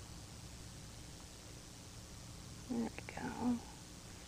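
Quiet steady background hiss, then about three seconds in a short, soft murmur from a woman's voice.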